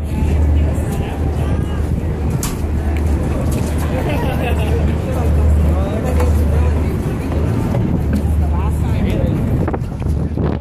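Indistinct chatter of several passengers on an open boat deck over a steady low rumble.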